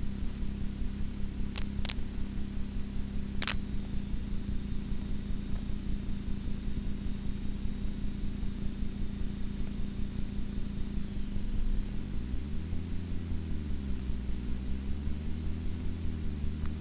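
A vehicle engine runs with a steady low hum, then changes speed from about twelve seconds in, its pitch wavering up and down. There are a few sharp clicks in the first four seconds.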